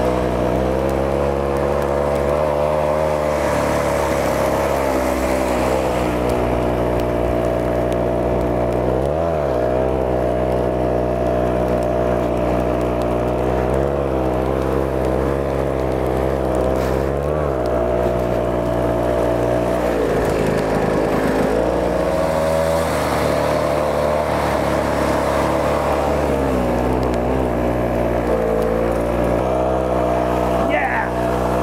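The 134cc two-stroke engine of a tracked ski-propulsion unit runs continuously while pushing a rider through deep snow. Its pitch dips and comes back up several times as the throttle is eased and reopened.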